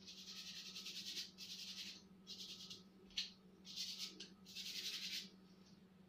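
Paintbrush scrubbing paint onto canvas in about six scratchy strokes, each half a second to a second long, with one short sharp stroke about three seconds in. A steady low hum runs underneath.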